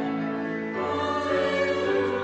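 Choir singing a slow hymn in sustained chords, with a chord change a little under a second in.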